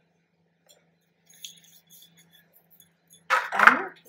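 Faint, scattered light clinks of stainless steel kitchen vessels being handled on a stone counter, over a steady low hum.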